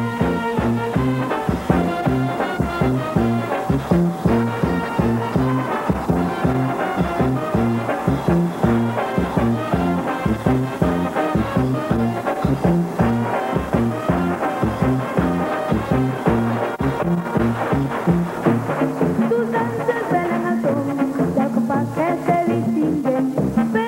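Instrumental break in a Mexican song: brass, trumpets and trombones, plays the melody over a bass line with a steady bouncing beat.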